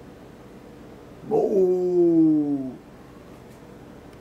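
A single drawn-out wordless vocal sound in a man's pitch range. It starts a little over a second in, lasts about one and a half seconds and slides down in pitch, over a faint steady hum.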